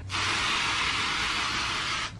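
Aerosol can of temporary root-cover hair color spray hissing in one steady burst of about two seconds as it is sprayed onto the hair.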